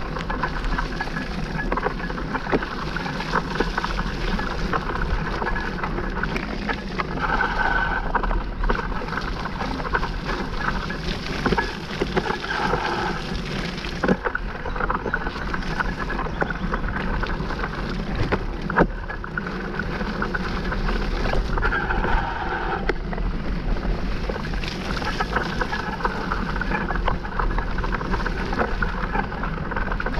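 Mountain bike ridden along a muddy singletrack: a steady rush of tyres through sticky mud and wind on the microphone, with the bike rattling over the ground and a couple of sharp knocks from bumps.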